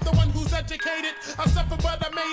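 Underground hip hop track in a DJ mix: rapping over a beat with heavy bass. The bass drops out for about half a second in the middle and again at the end.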